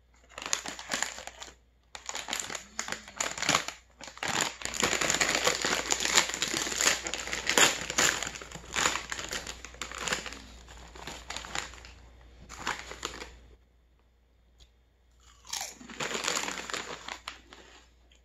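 Foil potato-chip bag crinkling as it is torn open and rummaged through, with chips crunching as they are eaten. The crinkling runs almost without pause for about thirteen seconds, then stops briefly before a shorter burst near the end.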